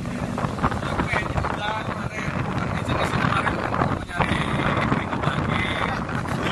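Wind buffeting the microphone: a loud, ragged rumble, with faint voices under it.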